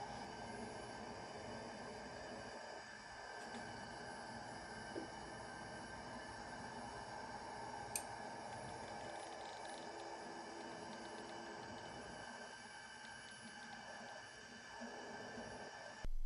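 Faint steady hum made of several even steady tones, with a single sharp click about halfway through.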